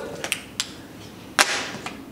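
Go stones clicking against a large vertical demonstration board as moves are placed: a few sharp, separate clicks, the loudest about one and a half seconds in.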